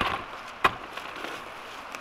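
Two sharp knocks about two-thirds of a second apart, from handling a dog-proof raccoon trap while baiting it with cat food.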